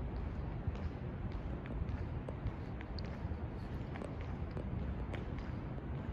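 Light, irregular footsteps on a hard floor over a steady low rumble of room and microphone noise.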